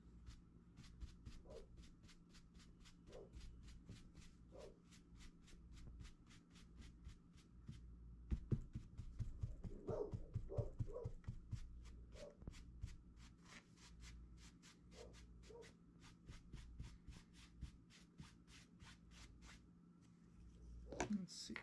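Stiff bristle paintbrush scrubbing paint into canvas fabric: a faint, even run of short scratchy strokes, about three or four a second, louder around the middle.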